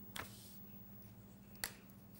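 Two short, sharp clicks about a second and a half apart, the second louder, over a faint steady hum.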